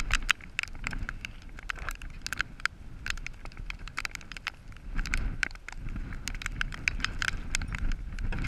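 Scattered raindrops tapping in sharp, irregular clicks, several a second, over a low wind rumble on the microphone.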